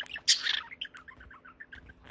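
Budgerigar chattering: a loud, scratchy burst about a third of a second in, then a run of short, quick chirps.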